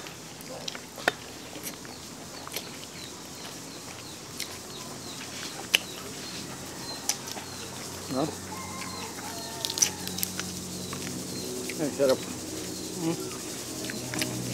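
Eating sounds from people eating by hand: scattered soft clicks and smacks of chewing and pulling meat apart. Behind them, a bird chirps over and over, about three short high chirps a second for several seconds, with a couple of lower bird calls later on.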